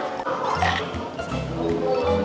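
Background music with a steady bass beat under a simple melody.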